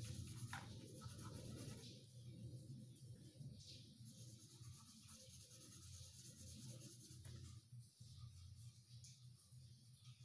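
Faint scratching of a coloured pencil shading on paper, filling in an area with repeated strokes, with a light tap about half a second in and another around seven seconds.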